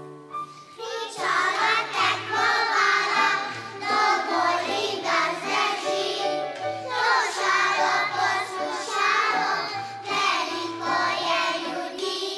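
A choir of young children singing a song together, coming in about a second in, over a small instrumental ensemble with a low bass line and wind and mallet instruments.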